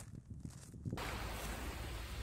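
Sparse faint low thumps, then about a second in a sudden cut to steady, loud wind rumbling on the microphone with the wash of Lake Superior's waves on the shore.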